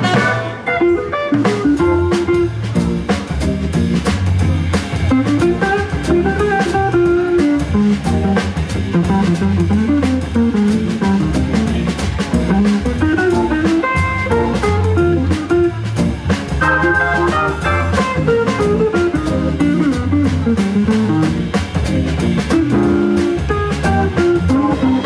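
Live jazz quartet playing: electric guitar over a Hammond organ bass line and a steady drum-kit beat.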